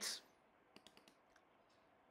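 Near silence broken by three or four faint computer-mouse clicks about a second in.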